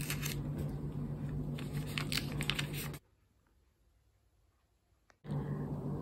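Quiet handling noise of fleece wadding and paper being trimmed and moved about, with a few soft clicks over a steady low hum; about three seconds in the sound cuts to dead silence for about two seconds.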